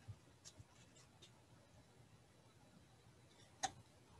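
Near silence: room tone with a few faint clicks, and one sharper click about three and a half seconds in.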